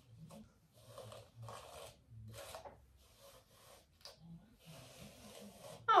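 Detangling brush raked through thick, blown-out type 4 natural hair in a series of short raspy strokes, about one a second. Worked gently from the ends after the brushing had made a crackling sound.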